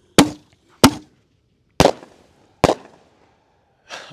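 Two artillery ball shells fired from mortar tubes, giving four sharp bangs in under three seconds: two launch reports about two-thirds of a second apart, then each shell's break in the air about a second and a half after its launch.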